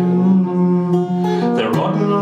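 Acoustic guitar strummed steadily under a man's voice singing long held notes, with a brief break in the line near the end.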